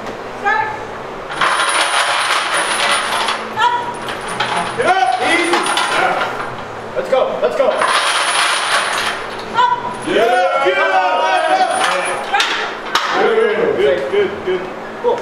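Steel chains hanging from a loaded squat bar clinking and rattling against the floor as the bar moves down and up, in several bursts of a second or two each. Men's voices call out between the bursts.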